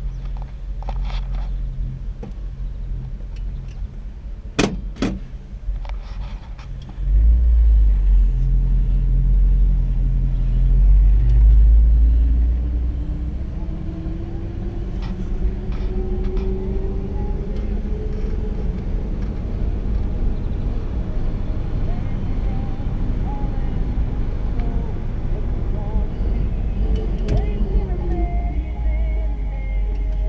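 1959 Chevrolet Bel Air driving slowly, its engine running steadily under tyre and road rumble, with a few sharp clicks about five seconds in. The rumble jumps louder about seven seconds in, and a little later the engine note rises as the car picks up speed.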